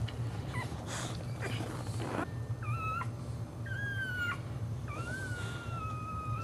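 A dog whining in three high, drawn-out whines, starting about two seconds in, the last one the longest, about two seconds.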